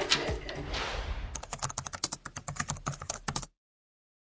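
Computer keyboard typing: rapid, irregular keystrokes for about two seconds that stop abruptly, as text is typed into a search bar. A little rustling comes first.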